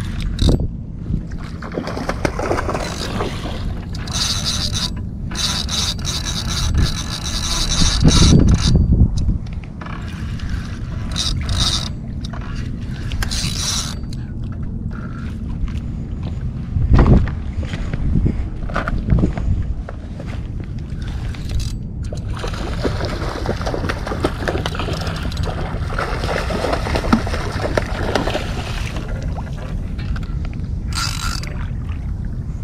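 Wind buffeting an action camera's microphone over water lapping on shoreline rocks, with a spinning reel being cranked to retrieve line; a whir sounds for several seconds from about four seconds in.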